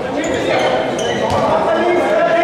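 A futsal ball being kicked and striking a sports-hall floor, a few sharp thuds over the voices of players and spectators.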